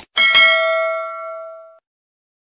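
A bell-like chime struck twice in quick succession, then ringing on with a steady tone that fades away over about a second and a half.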